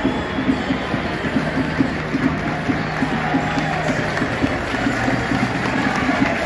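Music with a steady pulse played over a stadium's sound system, under the murmur of a crowd in the stands; scattered clapping starts near the end.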